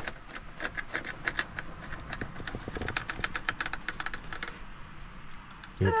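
A knife sawing back and forth through a thick sandwich of bread and crispy fried chicken pieces on a plate: a quick run of crunchy clicks that thins out about four seconds in.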